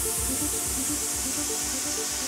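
Afro-Cuban-flavoured house music with a steady, regular low beat, a short repeating melodic figure over it, and bright high hiss from cymbals or shakers.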